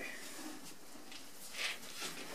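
Soft rubbing and patting of dry powdered clay being pressed by hand onto a wet thrown pot, with one louder rasp about one and a half seconds in.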